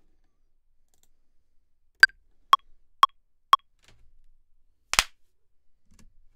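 Ableton Live's metronome counting in: four clicks half a second apart, the first one higher-pitched as the accent. About a second and a half later comes a single sharp hit, the one-shot sound being recorded into the take.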